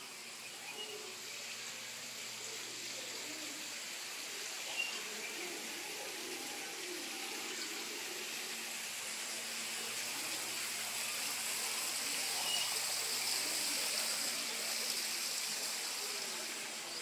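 Steady rush of running water, growing louder past the middle and easing off near the end, with a faint low hum beneath it.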